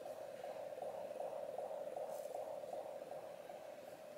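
Halo bassinet's built-in soothing sound playing faintly: a steady, mid-pitched hum with a fine, even flutter.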